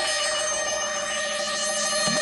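Radio station break jingle: a bright, bell-like chord of held electronic tones that starts suddenly, with a sweep rising and falling high above it about a second and a half in.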